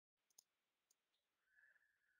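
Near silence: faint room tone with a couple of very faint clicks.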